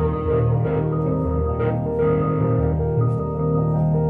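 Fender Rhodes electric piano and amplified electric guitar improvising slow, ambient music, with long, overlapping held notes over a steady low bass tone.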